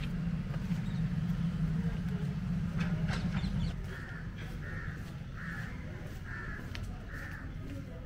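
A crow cawing five times in a steady series, about two caws every second and a half, in the second half. Before the caws, a low steady hum stops about three and a half seconds in.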